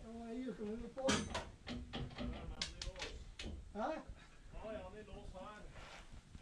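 People talking, with a run of sharp metallic clicks and knocks from a steel car-body rotisserie being worked by hand, the loudest about a second in.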